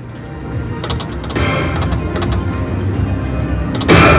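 Video slot machine's game music and reel-spin sound effects, growing louder, with a few short clicks as reels stop and a loud hit just before the end.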